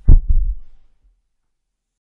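Two deep, low thuds in quick succession, dying away within a second.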